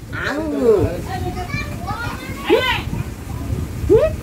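Baby talk and cooing between a woman and an infant: a few short, high, sing-song calls that swoop up and down.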